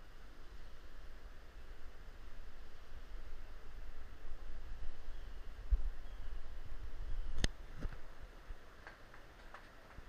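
Uneven low rumble of handling and wind on a hand-carried camera's microphone while walking along a steel-grate suspension bridge. A sharp click comes about seven and a half seconds in, with a fainter one just after.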